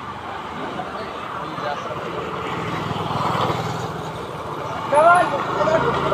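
Motor scooter engine running as it approaches, growing steadily louder. A man's voice shouts about five seconds in.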